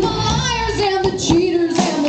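Live country-rock band with a female lead singer: a sung line carried over guitars and drums. The low band sound thins out about a second in, leaving the voice with a few sharp drum hits.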